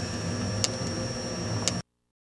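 Steady hum of a running early-1980s Compaq Portable computer, its cooling fan and hard drive, with a thin high whine over it. Two sharp clicks come about a second apart, and the sound cuts off suddenly near the end.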